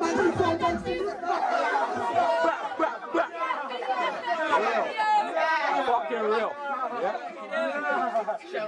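Several young men's voices talking and calling out over one another in indistinct chatter. A music track with a deep bass beat cuts off about a second in.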